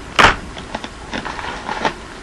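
Handling of packaging and toy cars: one short, sharp rustle a moment in, then faint rustling and small clicks as items in the box are moved about.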